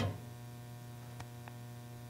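A steady, low electrical hum, with two faint ticks a little past the middle.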